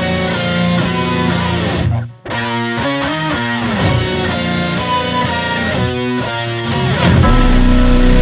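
Music: a slowed guitar remix with a plucked guitar melody. It drops out briefly about two seconds in, and near the end a heavy bass beat with quick high ticks comes in.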